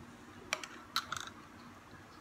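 A metal spoon clicking lightly against a glass a few times: one click about half a second in, then a small cluster around one second.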